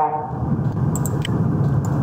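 Steady low rumbling background noise with no clear pitch, with a few faint short clicks about a second in and again near the end.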